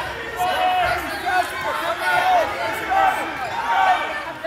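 Shoes squeaking on the wrestling mat in a string of short rising-and-falling squeaks as the wrestlers scramble, over a background murmur of voices.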